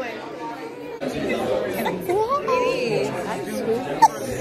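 Indistinct chatter of several people talking at once in a large hall.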